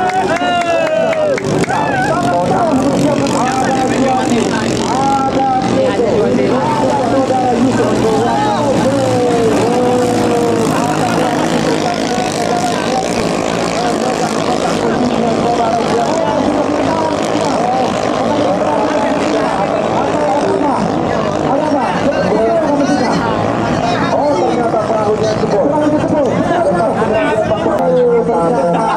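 Small engines of 6–7 horsepower racing ketinting longtail boats running at speed, a steady drone, with a man's voice over it.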